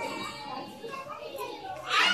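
Young children chattering in a room, with the voices overlapping. Just before the end the voices suddenly get much louder.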